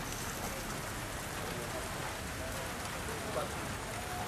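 A steady hiss of background noise with faint, distant voices in it.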